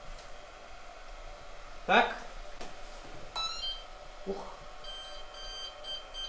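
Hobbywing Platinum 200A brushless speed controller sounding its power-up tones through the motor as the battery is connected: a quick run of tones about three seconds in, then a string of short, even beeps near the end, the signal that the controller has powered up and sees the motor.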